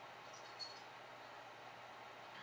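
A dog's metal tag clinks faintly as the dog chews on it, with a brief high ringing about half a second in, over quiet room tone.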